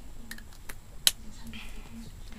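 A few sharp plastic clicks, the loudest about a second in, as small plastic lipstick tubes and caps are handled, over a faint low hum.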